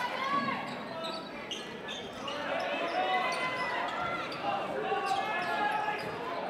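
Basketball dribbled on a hardwood gym floor, with faint voices and crowd murmur echoing in the hall.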